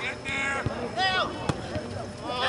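Short shouted calls from voices on a soccer field, with a few sharp thuds of a soccer ball being kicked, the clearest about a second and a half in.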